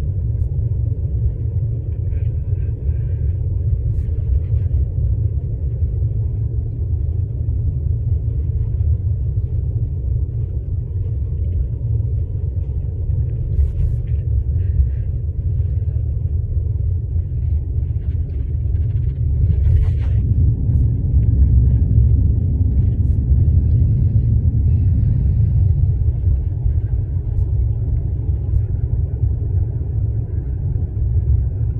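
Steady low rumble of road and engine noise inside a moving car's cabin, growing a little louder about two-thirds of the way through, with a single sharp click at about the same point.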